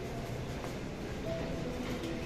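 Indoor mall ambience: a steady low rumble of the hall's air handling and crowd, with faint background music playing short notes at changing pitches.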